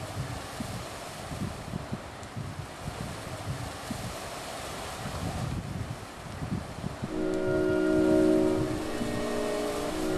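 A steady rushing noise with low irregular rumbles, then about seven seconds in a sustained chord of several steady tones comes in and grows louder.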